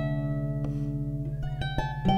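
Dusty Strings FH36S lever harp, tuned to A=432 Hz, played solo: single plucked notes ringing on over sustained low bass strings, with a few quicker plucks in the second half.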